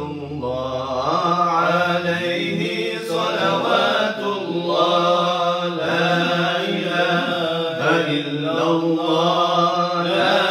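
A group of men chanting Islamic dhikr in unison into microphones, a low steady pitch held under melodic lines that swell and fall.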